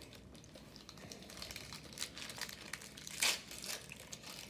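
Sealed trading card packs being handled and restacked, their wrappers crinkling faintly, with one brief louder crinkle a little after three seconds in.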